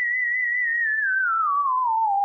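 A single high, wavering theremin-like tone with steady vibrato, held for about a second and then sliding down in pitch; it opens the podcast's outro music.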